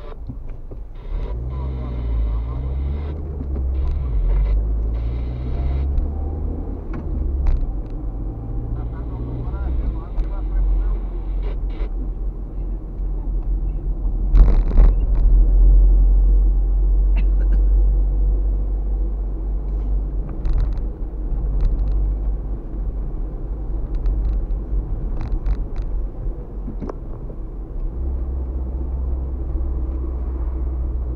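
Car driving, heard inside the cabin: a steady rumble of engine and tyres on the road, swelling louder about halfway through, with occasional short clicks and knocks.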